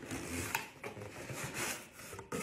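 Cardboard box flaps being pulled open: stiff cardboard rubbing and scraping, with a few small clicks.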